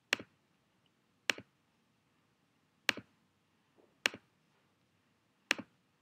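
Five computer mouse clicks at uneven gaps of one to one and a half seconds. Each is a sharp press followed by a softer release.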